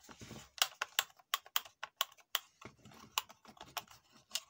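Plastic rocker buttons of a car power-window switch panel clicking as they are pressed, about ten sharp clicks at roughly two to three a second.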